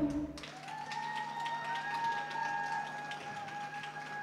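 Sparse, faint claps from an audience as applause begins, over a quiet, steady high tone that lingers after the music has ended.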